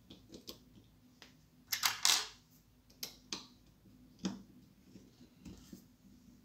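Hard plastic parts of an airsoft pistol and a 3D-printed scope mount handled and fitted by hand: a string of light clicks and scrapes, the loudest a short scraping rattle about two seconds in, then single clicks about a second apart.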